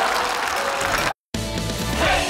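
Studio audience applause, cut off abruptly about a second in by a brief silence, then the sitcom's closing theme music starts with a steady beat.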